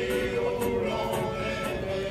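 A choir singing a sailors' song (chant de marins) together, the voices holding sustained notes.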